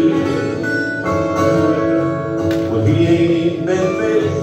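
Two acoustic guitars playing a country-folk song together, strummed and picked, with a man singing a held, wordless-sounding line over them.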